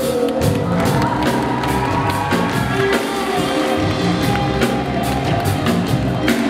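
Live band playing, drum kit strikes and cymbals over long held notes.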